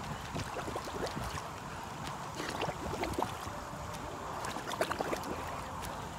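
Pool water sloshing and lapping around a swimmer holding the pool edge, with small splashes as she dips her face in and lifts it to breathe.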